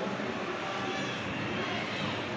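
Steady room noise in a crowded hall: an even, fan-like hum with faint, indistinct voices under it.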